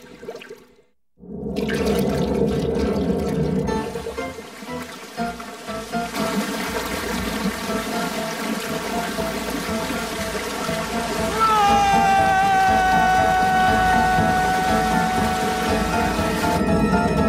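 Cartoon sound effects of bubbling, surging liquid slime over background music. A long high note enters about two-thirds of the way through, sliding slightly down and then holding.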